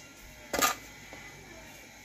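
A single brief click or knock about half a second in, over low room noise.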